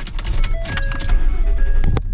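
Keys jangling in the ignition of a Ford Super Duty pickup as the engine is started, the low engine sound coming up about half a second in. Short dashboard warning chimes ding at several pitches over it.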